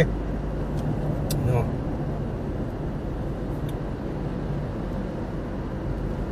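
Steady low drone of a car's engine and tyres heard from inside the cabin while driving at highway speed, with two faint clicks about a second in.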